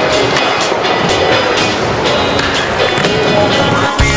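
Skateboard wheels rolling on a hard skatepark surface, with a run of sharp clacks from the board hitting and landing.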